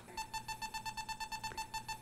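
CellSensor EMF meter's audible alarm beeping rapidly, about eight short high-pitched beeps a second. It is registering the small field at the heated mat's controller connection.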